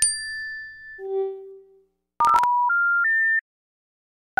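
Synthesized generative-music tones: a held high pure tone fading out about a second in, a brief low tone, then after a short gap a quick run of plain beeps stepping upward in pitch that cuts off suddenly.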